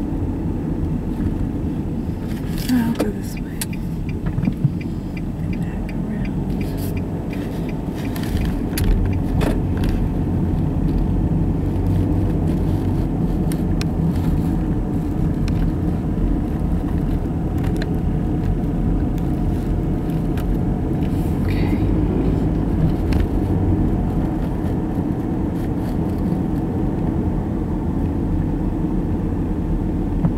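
Steady low rumble of a car's engine and tyres heard from inside the cabin while driving slowly, with scattered small clicks and rattles.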